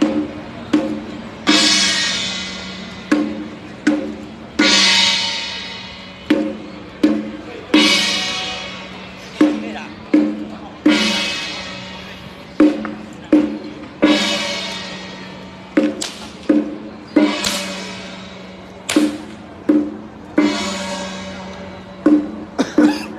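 Chinese temple percussion ensemble playing a repeating beat: sharp drum strikes with a loud ringing metal crash of gong and cymbals about every three seconds, each crash fading away before the next.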